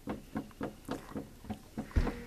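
A dog panting quickly and steadily, about four breaths a second, with a single sharp knock at the very end.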